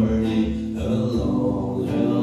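Acoustic guitar played in a blues medley's instrumental passage, chords strummed a little under a second apart and ringing between strokes.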